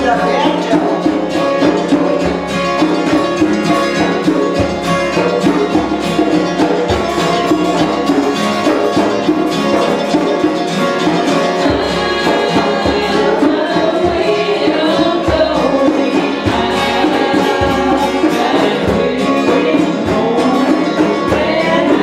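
Live acoustic folk-style music: a guitar strummed steadily, with voices singing along.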